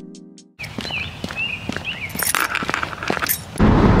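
Footsteps of dress shoes on a concrete sidewalk, with birds chirping, after the last note of a song fades out. Car cabin noise cuts in near the end.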